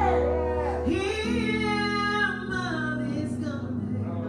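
A woman singing a slow church song with vibrato over held electronic keyboard chords, the chords changing twice.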